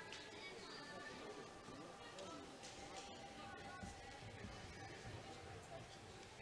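Faint ambience of a large indoor sports hall: distant voices and quiet music.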